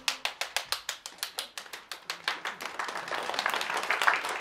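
Hands clapping in a fast, steady rhythm, about five claps a second, loosening into denser, less even applause in the second half.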